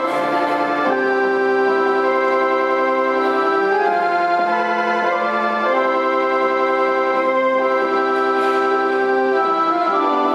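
Electronic organ playing slow, sustained chords, each held for one to three seconds before the next.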